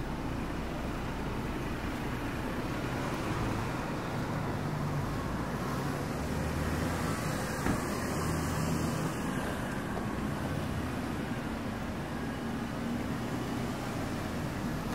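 Steady hum of city street traffic, with engine drone low down, swelling slightly midway. A single short click comes just under eight seconds in.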